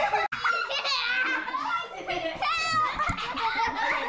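Young girls laughing together, with a run of quick ha-ha-ha pulses about two and a half seconds in.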